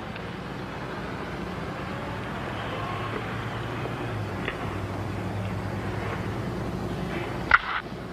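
Steady hiss and low hum of an old film soundtrack, with no commentary. A single short, sharp sound comes near the end.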